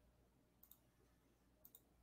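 Near silence: room tone with two faint clicks about a second apart, from working at a computer.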